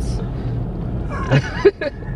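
Steady low rumble of a car heard from inside the cabin. Brief voice sounds break in about halfway through, with a sharp knock near the end.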